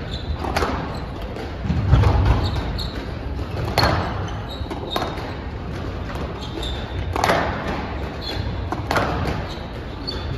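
Squash rally: the ball is struck by rackets and hits the court walls with sharp thuds about once every one to one and a half seconds, in a large echoing hall. Short high squeaks of court shoes on the floor come between some of the hits.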